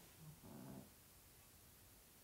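Near silence: room tone, with one faint, short, soft sound about half a second in.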